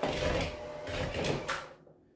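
Electric hand mixer running with its beaters churning butter and sugar in a plastic bowl, cutting off about one and a half seconds in.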